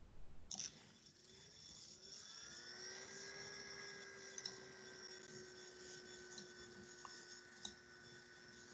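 Near silence: faint room tone with a faint whine that glides up in pitch about two seconds in and then holds steady, and a few faint clicks.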